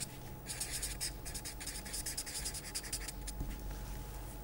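Felt-tip marker writing on paper: a run of short pen strokes that come in patches with brief pauses between them, over a faint steady hum.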